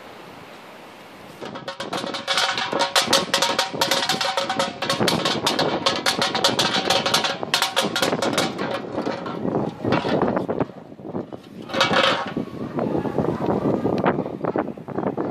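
Crushed aluminium beer can clattering and scraping as it tumbles across brick paving. The rapid metallic rattle eases off about ten seconds in and comes back in a short burst near the end.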